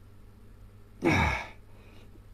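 A man's loud sigh about a second in: one short, forceful breath out with the voice falling in pitch.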